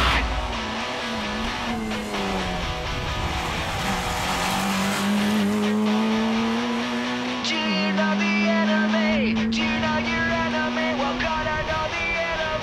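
A rally car's engine runs hard. Its note wavers and falls early, then climbs slowly and drops sharply at a gear change about seven and a half seconds in, before holding steady.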